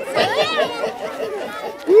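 A crowd of children chattering and calling out excitedly, with several voices overlapping and one rising-and-falling call about half a second in.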